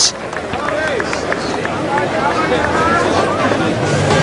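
Cricket ground crowd noise just after a boundary four: a steady hubbub of many spectators' voices, with scattered individual calls.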